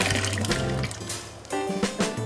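Background music with the sound of blended paper pulp and water being poured from a stainless steel blender jug into a tub of water, a splashing pour around the middle.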